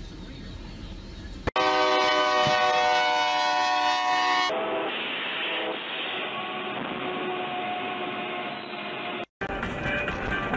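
Train horn sounding one long, loud, steady chord that cuts in about a second and a half in. Then, in a muffled recording, the horn fades into steady train noise, which ends in a sudden cut.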